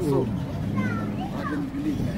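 Voices talking, children's voices among them, in short bursts throughout.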